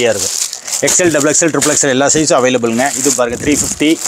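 Plastic packets of garments crinkling and rustling as they are handled and shifted, under a man talking.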